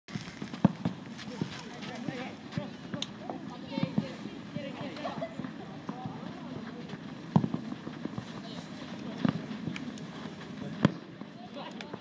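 Footballs being kicked on an open pitch: sharp thuds scattered through, the three loudest near the start, past the middle and near the end, with players calling in the distance.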